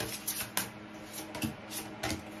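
A deck of tarot cards being shuffled by hand, with a few soft, quick flicks and slaps of the cards.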